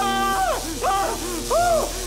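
A man crying out in pain: a held, strained cry ends just after the start, followed by three short wails that each rise and fall in pitch, over a faint steady low drone. He is screaming under torture.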